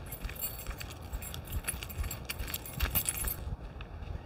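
Small metal pieces jingling and clinking in quick, uneven bursts while walking. The jingling stops about three and a half seconds in, as the movement stops.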